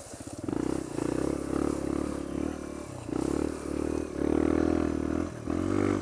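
Sinnis Apache 125 cc motorcycle engine with a D.E.P. aftermarket exhaust, putting at low revs at first and then revving up and down in a series of short throttle surges as the bike is ridden off-road over shingle and sand.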